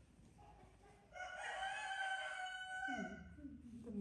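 A rooster crowing once: a long call of about two seconds that starts a second in and drops in pitch at the end.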